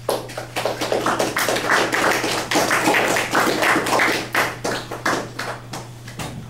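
A small audience clapping, starting at once and dying away near the end.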